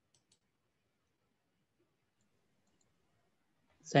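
Near silence with two faint clicks just after the start; a man's voice begins right at the end.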